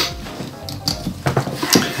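Soft background music, with a few light metallic clicks from the brass clip hook of a leather shoulder strap being fastened onto the briefcase's side ring, about a second in and again near the end.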